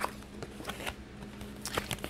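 A few faint, short clicks and rustles of tarot cards being handled, over a faint steady hum.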